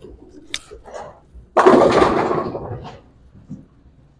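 A bowling ball hits the pins about one and a half seconds in: a sudden loud crash of pins clattering, dying away over about a second and a half.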